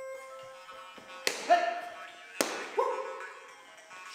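Two sharp thuds about a second apart, each followed shortly by a brief ringing tone, over quiet background music.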